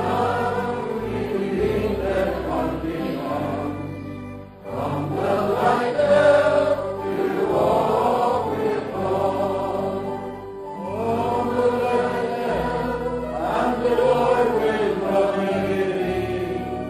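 Group of voices singing a slow hymn together over an accompaniment of held low bass notes, with a brief pause between lines about four and a half seconds in.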